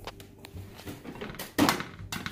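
An egg tapped against the rim of a frying pan: a couple of light taps, then one harder knock about one and a half seconds in that cracks the shell.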